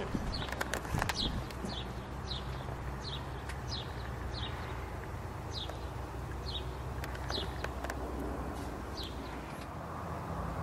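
A bird chirping, a short falling note repeated about every two-thirds of a second, over a low steady hum.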